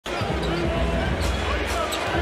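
Basketball dribbled on a hardwood court, with a few bounces in the second half, over a steady arena crowd murmur.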